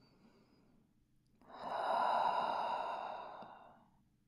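A woman's long, audible sighing exhale, about two seconds long, that starts about a second and a half in, swells quickly and fades away.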